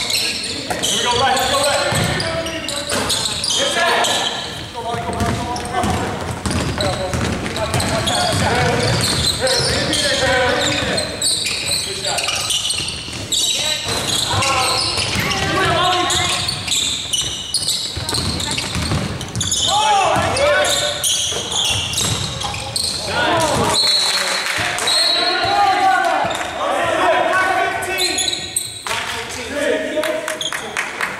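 A basketball dribbled on a hardwood gym floor, with players' voices calling out during play, in a large echoing gym.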